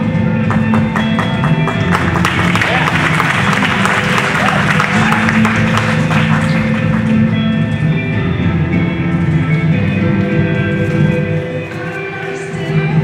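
Recorded song with guitar playing over the hall's sound system. Audience applause and cheering join the music from about two seconds in and fade out by about seven seconds.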